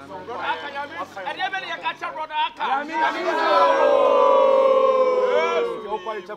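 Several voices call out and talk over one another in excited group prayer. About three seconds in, one voice rises into a long, loud, drawn-out cry held for about two and a half seconds, sliding slightly down in pitch.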